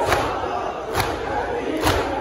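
A large crowd of mourners doing matam, striking their chests with their palms in unison: a sharp, loud slap about once a second, three times here, over the continuous sound of many men's voices.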